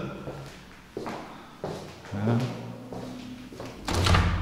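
Footsteps and a few sharp clicks in an empty, unfurnished room, with a brief faint voice in the middle. Near the end a louder clunk as a hand works the PVC window.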